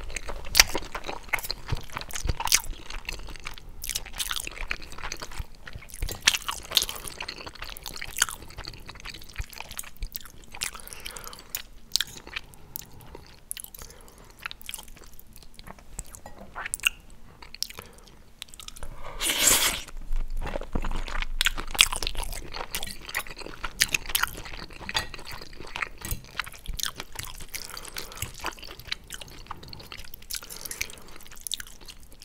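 Close-miked chewing of squid ink pasta with shrimp and cherry tomatoes: wet mouth sounds with many small crackling clicks, and a longer, louder burst about two-thirds of the way through.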